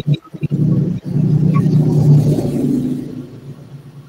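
A low, steady noise picked up through a video-call microphone, dropping in and out in the first second, swelling about a second in and fading away over the last second.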